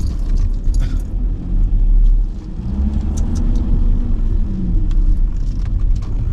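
Car engine and tyre rumble heard from inside the cabin as the car drives off, with the engine note rising and falling once around the middle.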